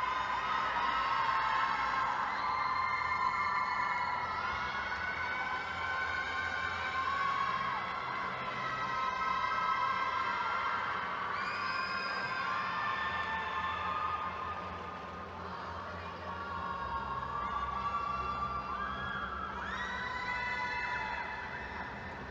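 Spectators in an indoor arena cheering and shouting, many high-pitched voices overlapping, easing off a little past the middle and swelling again near the end.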